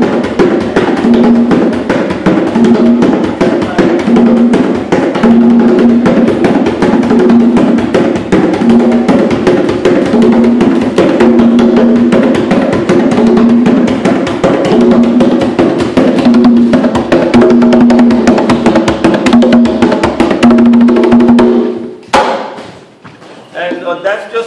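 A pair of congas played by hand in a Puerto Rican bomba rhythm from Loíza: quick slaps and taps with a low ringing open tone recurring about once a second. The drumming stops suddenly about two seconds before the end.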